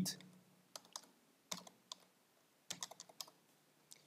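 Faint computer keyboard typing: a few scattered keystrokes, then a quick run of them about three seconds in.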